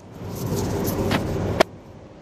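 Smartphone being handled inside a car: rubbing and rustling against its microphone, then one sharp click about one and a half seconds in. A low car-cabin rumble runs underneath.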